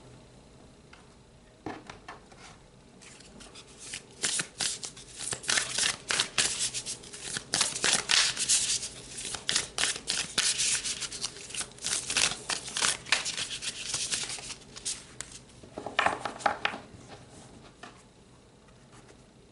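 Tarot cards being shuffled and handled: a long run of quick, papery card flicks and rustles beginning a few seconds in, then a shorter burst near the end as cards are drawn.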